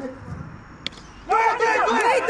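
A single sharp knock as a cricket bat strikes a tennis ball, a little under a second in. About half a second later, spectators burst into excited shouts of "Go!".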